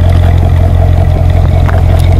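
Chevrolet Corvette's V8 engine running loud at a steady pitch, a deep even drone.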